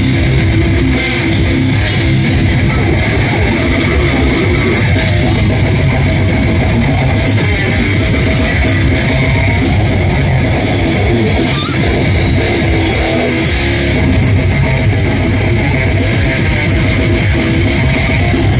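A slam death metal band playing live: heavily distorted electric guitar, bass and fast drums, loud and dense throughout.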